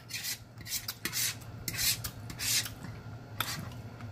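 A metal fork scraping and cutting across a plate, gathering up leftover food in about six short rasping strokes.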